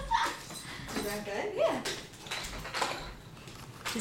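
Six-month-old baby's short vocal sounds, one rising in pitch about a second and a half in, with light clicks of toys on plastic high-chair trays.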